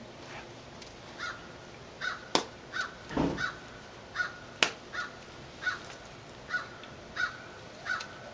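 A bird giving a series of short, harsh calls of the same pitch, roughly one to two a second, starting about a second in. Two sharp clicks a couple of seconds apart stand out above the calls, with a brief low rustle between them.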